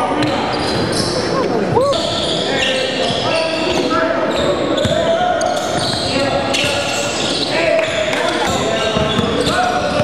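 Sounds of a basketball game in a gym: a basketball bouncing on the hardwood court and a few short sneaker squeaks, under continuous indistinct shouting and chatter from players and spectators, echoing in the large hall.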